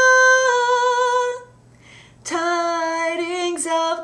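A solo soprano voice singing unaccompanied: she holds one long high note that ends about a second and a half in, then after a short breath begins a lower phrase with vibrato.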